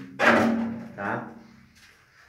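Only speech: a man's voice in two short spoken bursts, the first about a quarter second in and a shorter one about a second in, then a faint background.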